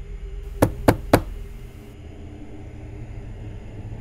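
Three quick knocks on a door, about a quarter second apart, over a low steady drone.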